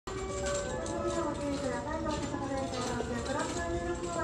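A voice speaking over the station platform's loudspeakers, over a steady low rumble of the station.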